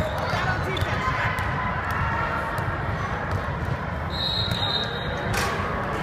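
Indoor basketball game: a ball bouncing and knocking on the hardwood court over steady gym noise and background voices. A steady high whistle blast lasts about a second just past the middle, likely the referee's whistle.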